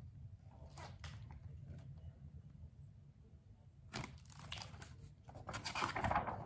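Paper pages of a large picture book rustling as they are handled and turned: a couple of brief rustles about a second in, then louder rustling around four seconds in and again near the end as the pages are flipped.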